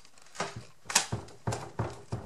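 Unanchored bookcase rocked by hand, knocking against the wall about five times in quick, uneven succession, the loudest about a second in: its top is not secured to the wall studs.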